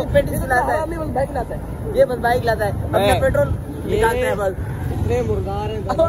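Several young men talking over one another, with a steady low rumble of street traffic underneath.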